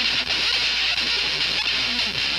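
Horror-punk band playing live: distorted electric guitar over a steady drum beat, with a hard-beaten strike about every half second, on a raw lo-fi audience tape.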